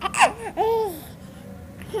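Baby laughing: a quick high squeal that falls in pitch, then one longer rising-and-falling laugh, both in the first second.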